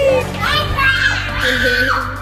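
A young girl's excited, wordless vocal sounds while playing, over background music.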